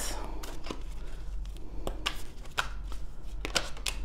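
Tarot cards being shuffled and handled: a run of irregular light clicks and snaps of card stock.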